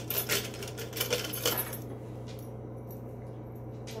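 Small metal drawer pulls and screws clinking and rattling together as they are handled, over the first two seconds, then only a steady low hum.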